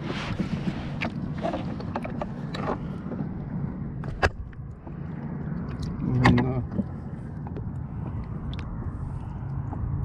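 Muffled water sloshing around an action camera held at and under the water surface, with a few sharp knocks. A short voice-like sound comes about six seconds in.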